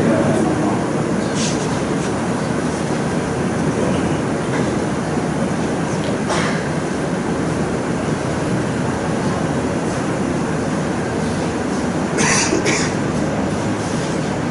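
A loud, steady rushing noise, like heavy machine or air noise in the room, with no clear speech. It is broken by a few brief sharp sounds, two close together near the end.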